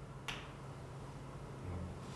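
A single faint, sharp click, like a marker tip tapping a whiteboard, about a quarter second in.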